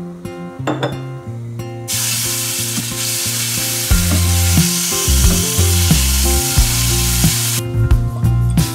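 Raw chicken breasts sizzling in hot oil in a stainless steel sauté pan. The sizzle starts suddenly about two seconds in and cuts off shortly before the end, over background music.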